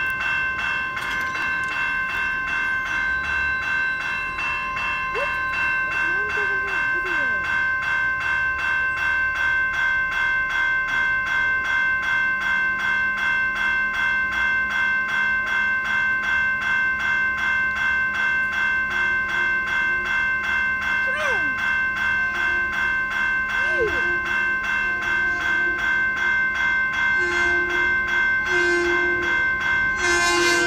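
Railroad grade-crossing warning bell ringing rapidly and steadily. Near the end an approaching Long Island Rail Road M7 electric train sounds its horn in short blasts.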